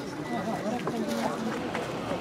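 Indistinct talk of people, with no clear words, over a steady open-air background noise.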